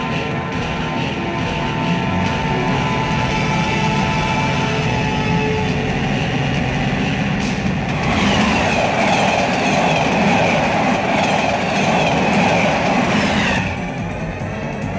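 A train running on the rails, its wheels clattering. About eight seconds in it gets louder and harsher, as if rushing close past, then cuts off sharply just before the end.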